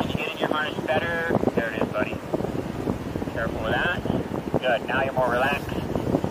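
Wind rushing over the microphone of a paraglider in gliding flight, a steady rumble, with indistinct voices over it.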